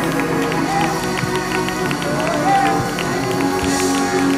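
Gospel church choir singing with instrumental accompaniment, the singers clapping their hands along to the beat.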